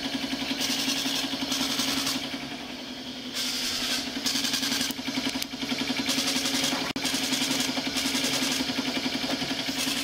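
Built-in printer of an evidential breath-alcohol test instrument printing the result ticket: a steady motor hum under rhythmic mechanical chatter that comes in short bursts of about half a second, line after line.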